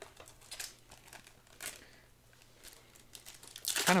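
Foil booster pack wrapper crinkling as a Japanese Pokémon card pack is picked up and handled: a few short, faint rustles, then a louder crinkle near the end.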